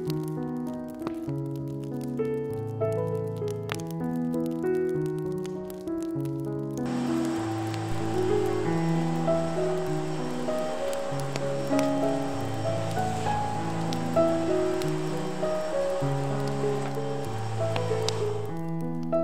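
Instrumental background music throughout. About seven seconds in, a steady rushing hiss from a stick vacuum cleaner running on a tiled floor starts under the music and stops near the end.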